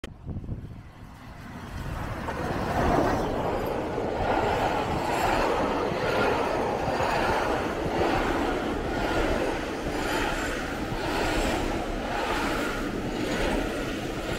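Steam-hauled passenger train passing close by: the locomotive comes past and its coaches follow, their wheels clattering over the rail joints in a regular beat about once a second.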